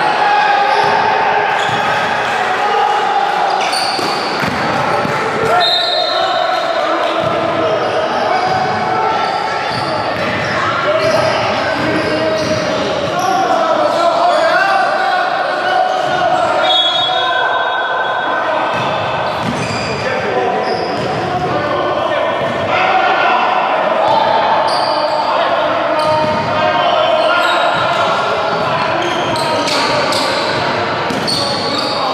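Basketball bouncing and dribbling on a hardwood gym floor during a game, under indistinct players' voices, all echoing in a large hall.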